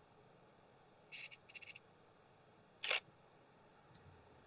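Nikon D5600 DSLR taking a shot: a short run of faint clicks about a second in, then a single sharp shutter release near three seconds in.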